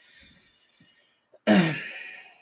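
A man coughs once to clear his throat about one and a half seconds in: a single sharp, loud burst that fades within a second.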